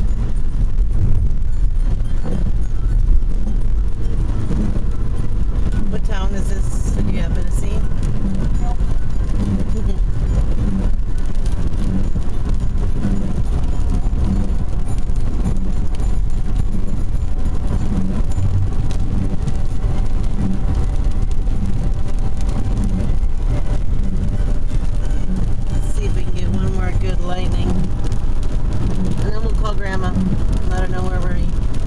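Steady road noise inside a moving car: low engine and tyre rumble on wet pavement, with faint voices briefly about six seconds in and again near the end.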